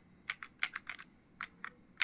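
Buttons of a Casio fx-991ES PLUS scientific calculator being pressed: a quick, uneven run of about eight soft clicks as digits are keyed in.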